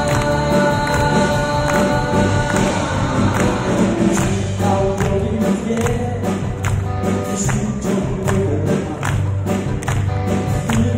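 A man singing live into a microphone, backed by a band of drum kit, electric guitars and keyboard through a PA, with a steady drum beat.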